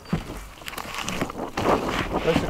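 Rustling and scraping of a wooden frame covered in stapled plastic sheeting as it is moved and set down over a raised garden bed, with a few light knocks and a louder rustle near the end.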